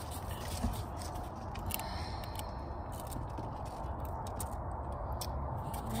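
Outdoor background noise: a steady low rumble with scattered faint clicks and scrapes.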